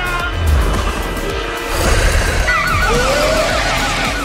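Film soundtrack music over a heavy, deep rumble. A little past halfway, a fast high warble joins in, repeating about five times a second.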